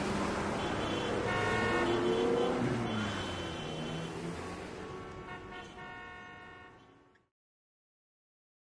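Street traffic: road vehicles running and passing, with a car horn sounding about a second in and again from about five seconds. The sound fades out a little before the end, leaving silence.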